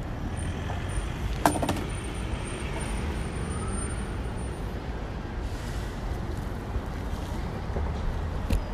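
Outdoor road-traffic noise: a steady low rumble, with one sharp knock about a second and a half in.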